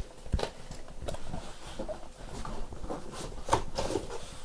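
A cardboard case of trading card boxes being opened and handled: irregular rustling with scattered light taps and clicks, a few of them close together near the end.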